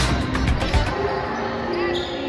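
Music playing over a basketball being dribbled on a gym's hardwood court, with a few sharp bounces in the first second and a brief sneaker squeak near the end.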